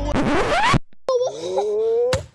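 A record-scratch sound effect cuts the music off: a noisy rising sweep lasting under a second that stops abruptly. After a short gap comes a drawn-out, slowly rising tone.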